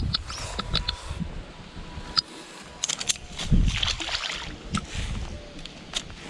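Wind rumbling on the microphone, with scattered sharp clicks and a short splashy swell of water about three and a half seconds in, as a surface lure is worked near the bank.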